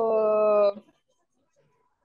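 A woman's drawn-out hesitation sound held at one steady pitch, lasting about a second and stopping just under a second in.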